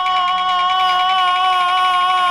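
Peking opera laosheng singer holding one long, steady high note at the end of the sung line, with the accompaniment under it.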